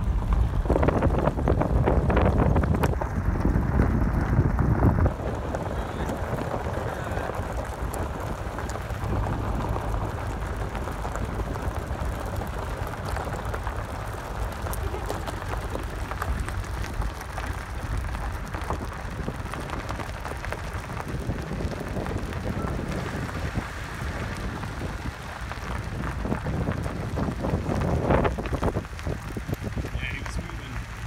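Vehicle driving on a gravel road, heard from inside the cabin: steady tyre noise and gravel crackle with wind rush, louder for about the first five seconds and swelling again near the end.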